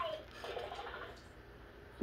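Mostly a quiet room: a spoken word trails off right at the start, a faint murmur follows for about a second, then only low room tone.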